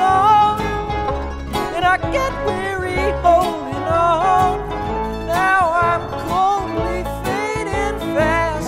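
Bluegrass string band playing an instrumental passage: picked acoustic strings with sliding melody notes over a steady bass line.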